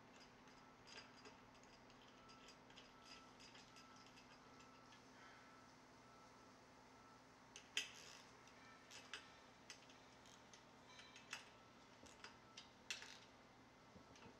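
Faint metallic clicking from a 9/16 socket wrench tightening a 3/8 bolt into a metal light pole, single clicks about a second apart in the second half, the loudest just before the middle. Before that, only faint ticking as the bolt is turned.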